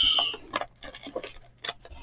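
Foil-wrapped Bowman Chrome baseball card packs being lifted out of a box and handled: a brief rustle at the start, then scattered light crinkles and clicks.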